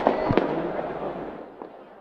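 Two sharp firecracker bangs about a third of a second apart right at the start, then a fainter pop later, over crowd noise that fades away.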